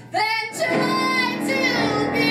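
A woman singing a cabaret song into a microphone over instrumental accompaniment, with a brief gap at the start before her voice comes back in with sliding, held notes.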